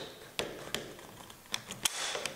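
The bolt of a Beretta Model 1931 experimental semi-auto rifle being drawn back slowly by hand. It gives a few light metallic clicks as it unlocks and slides rearward, with a quick cluster of clicks near the end.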